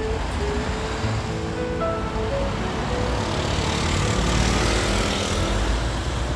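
Soft background music with held melody notes over steady street traffic noise, the traffic swelling in the middle as a vehicle goes by.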